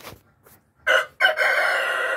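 A rooster crowing: a short first note just under a second in, then one long, loud held call.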